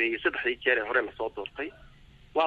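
Speech only: a voice reading the news in Somali, pausing briefly near the end.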